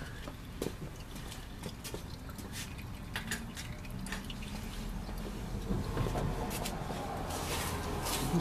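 Fluid dripping from the underside of an opened automatic transmission case: irregular small drips and ticks over a low steady hum.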